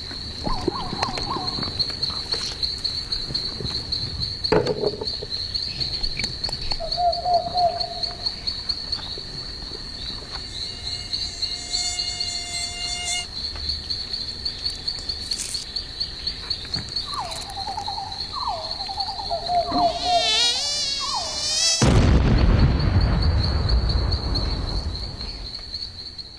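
Mosquito whining steadily, its buzz wavering, over intermittent chirping of night insects. Near the end the whine wobbles and a loud, sustained burst of noise follows for about four seconds.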